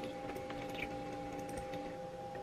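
A few faint, scattered clicks of computer work at a desk, over a steady electrical hum with two constant pitches.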